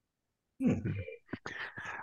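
Soft, mumbled speech, partly whispered, starting about half a second in after a moment of dead silence.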